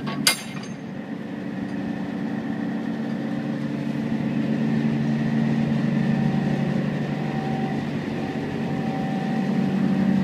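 Thermo King SB-210 diesel reefer unit running just after start-up, heard from inside the trailer box: a steady mechanical drone that grows somewhat louder over the first few seconds. A short knock comes right at the start.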